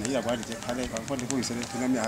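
A man speaking to a seated group, his voice rising and falling in short phrases.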